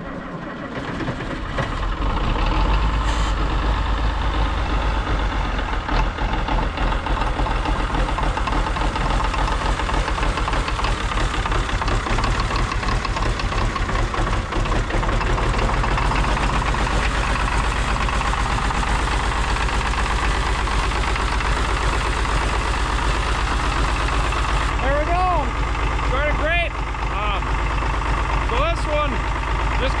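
Farmall 560's diesel engine started cold after its glow plugs have been run: it catches about two seconds in and settles into a steady idle with a deep low rumble.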